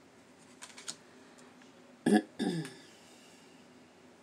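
A few light taps of tarot cards set down on a glass tabletop, then two short, throaty vocal sounds from the woman about halfway through, the second falling in pitch.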